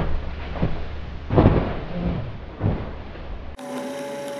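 A few soft thumps and rustles over a low rumble, the loudest about a second and a half in; near the end a steady hum starts.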